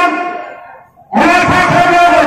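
A man's loud, drawn-out voice through a public-address microphone: one phrase trails away during the first second, there is a brief pause, and then the voice comes back loudly for the rest of the time.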